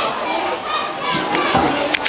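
Children at play, their voices overlapping with talk, including high calls that rise and fall.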